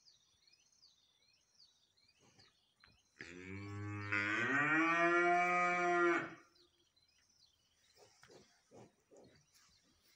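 A Holstein-Friesian heifer moos once, starting about three seconds in: one long call of about three seconds that rises in pitch partway through, holds, and then cuts off.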